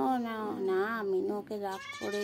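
A domestic cat yowling: one long, wavering call lasting over a second, followed by a few shorter meows.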